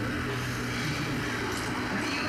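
A man's long, exaggerated yawn: a low, steady drone of voice that fades about a second in.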